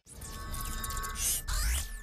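Electronic intro music with sci-fi sound effects: held tones under a noisy wash, then a rising sweep over a deep boom about one and a half seconds in.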